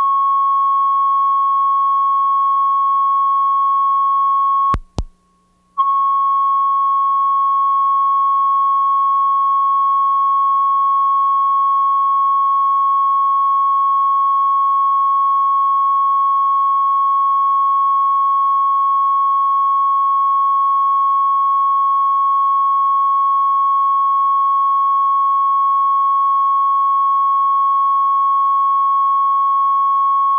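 Steady single-pitch line-up reference tone recorded with colour bars at the head of a broadcast videotape. It breaks off with a click for about a second around five seconds in, then resumes unchanged.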